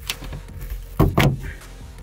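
Car headliner board being pulled and worked free of its retaining tab: a sharp click at the start and a louder short scrape about a second in, over a faint steady hum.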